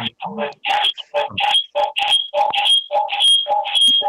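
Audio feedback on a phone-in line: the meeting's audio loops back through a caller's second listening device, giving a stuttering chain of short, garbled bursts with ringing tones, about three a second. The caller's device is playing the meeting audio while they are calling in.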